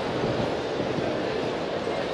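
Steady crowd hubbub in a large exhibition hall: many voices blending into a continuous din, with no single voice standing out.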